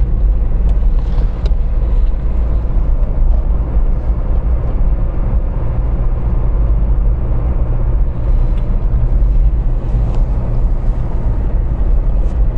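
Steady low rumble of a car driving at speed on an open road, heard from inside the cabin: engine, tyre and wind noise with no change in pitch.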